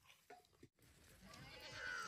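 Near silence with a couple of faint clicks, then from about a second in, faint bleating from a flock of sheep and goats that grows louder toward the end.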